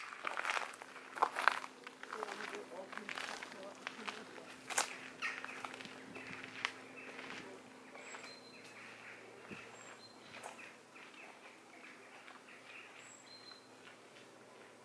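Footsteps crunching on a gravel path, loud at first and fading as two people walk away. A few short, high bird chirps come in the second half.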